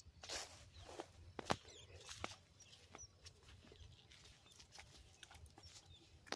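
Faint footsteps and rustling on a dry, sandy riverbank, with a few scattered sharp clicks.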